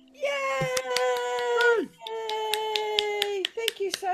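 A woman cheering with two long drawn-out calls, each held on one pitch, the first sliding down at its end, over scattered hand claps. A short spoken bit comes near the end.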